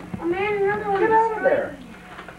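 A person's wordless, drawn-out, high-pitched vocal exclamation lasting about a second and a half, its pitch climbing and wavering.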